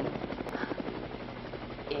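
Helicopter sound effect: a steady, rapid rotor chop, quieter than the voice around it.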